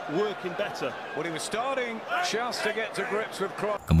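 A man's voice commentating on the boxing, quieter than the narration, with a few short sharp knocks mixed in.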